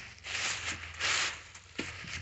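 Loose plastic wrapping rustling and crinkling as it is handled and pulled aside, loudest about half a second in and again around one second in.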